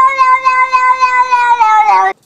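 A cat giving one long, loud, steady yowl with its mouth wide open, sinking slightly in pitch near the end before it breaks off.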